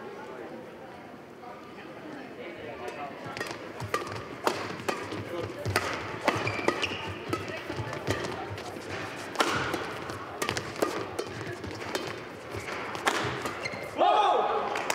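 Badminton rally: sharp racket hits on the shuttlecock in quick exchanges from about three seconds in, with players' footwork on the court, over the murmur of the crowd in the hall.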